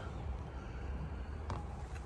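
Low, steady background rumble in a pause between words, with one faint click about one and a half seconds in.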